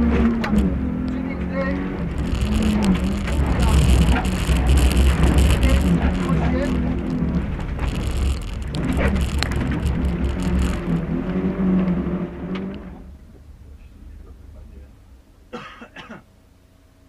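Rally car's engine, heard from inside the cabin, revving hard and dropping through repeated gear changes while driven fast on a dirt track, with spells of loud gravel and dirt hiss under the car. About thirteen seconds in, the engine noise falls away to a much quieter level as the car slows.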